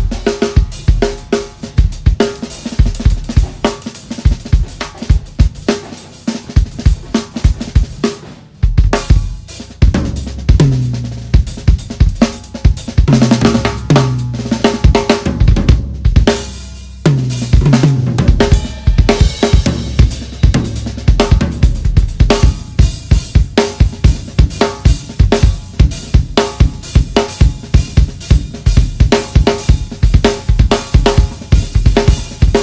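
Solo on a DW acoustic drum kit: rapid bass drum, snare and cymbal strokes throughout, with tom runs stepping down in pitch in the middle stretch and two brief breaks in the playing.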